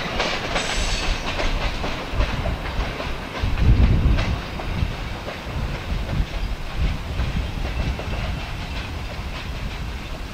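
Freight train's boxcars rolling away along the track, steel wheels running over the rails with a low rumble that swells about four seconds in, then slowly fades as the train recedes.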